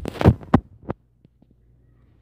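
Handling noise from a phone being moved: a loud burst of rubbing and scraping right on the microphone with a few sharp knocks over the first second, then only a faint steady low hum.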